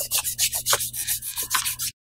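Eraser rubbing back and forth on paper in rapid scrubbing strokes, about seven a second, cutting off suddenly near the end.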